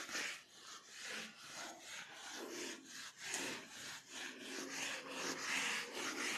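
Felt board eraser rubbed back and forth across a whiteboard in quick repeated strokes, about two a second, wiping off marker writing.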